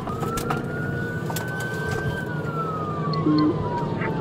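Police patrol car siren on a slow wail, rising, holding briefly, then falling, over the car's engine and road noise at speed. A short low beep sounds about three seconds in.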